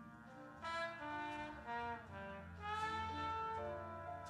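Jazz big band brass music with a trombone featured, playing a melodic line: a run of short notes, then one long held note near the end.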